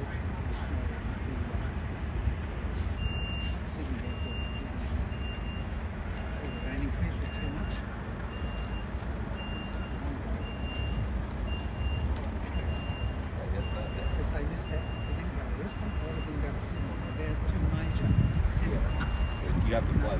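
A vehicle's reversing alarm beeping at one high pitch about once a second, starting a few seconds in and stopping near the end, over a steady low rumble.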